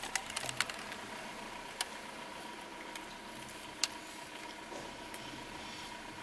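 A person chewing a mouthful of burger, with a few scattered soft mouth clicks and smacks, over a quiet parked-car interior with a faint steady tone.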